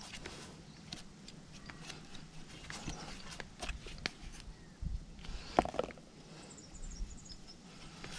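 Wire brush scrubbing the threaded end of a galvanised steel pipe: faint, irregular scratching strokes and small metallic clicks, with a slightly louder knock or two a little past the middle.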